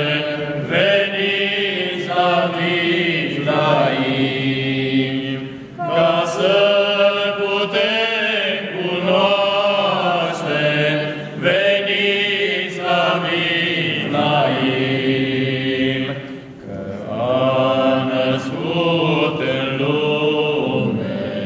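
A small group of men singing a Romanian Christmas carol (colindă) together in chant style, in sung phrases of a few seconds separated by brief breaths.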